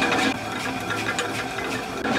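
Water-powered stone flour mill (chakki) running: a steady grinding rumble from the turning millstone mixed with the rush of the stream that drives it.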